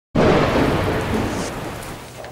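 A loud rumble of noise that starts suddenly and fades slowly over about two seconds, like a thunder or impact sound effect.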